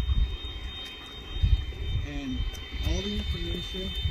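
Electric ducted fan of a Freewing Avanti S 80mm RC jet running at low taxi power: a steady high whine, with wind rumbling on the microphone.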